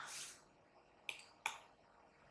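A brief soft hiss, like a breath, then two faint, sharp clicks about a third of a second apart, as the digital whiteboard is worked and its page scrolled.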